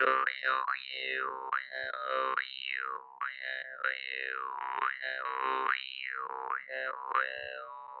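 Russian jaw harp (Glazyrin Compass vargan) played solo: a steady twanging drone with an overtone melody gliding up and down, about one or two sweeps a second, broken by short rhythmic gaps.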